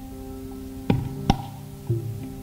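Steady tambura drone with three isolated, irregularly spaced hand-drum strokes, each with a short ringing tail: the accompanists tuning up before the concert starts.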